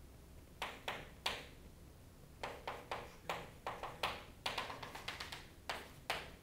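Chalk writing on a chalkboard: short, sharp chalk strokes and taps, a few about half a second to a second in, then a quicker run of them from about two and a half seconds until near the end.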